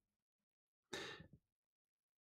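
Near silence, broken about a second in by one short breath from the narrator.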